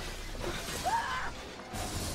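Film soundtrack: score music mixed with crashing and shattering debris as a house breaks apart, with a short rising tone about a second in.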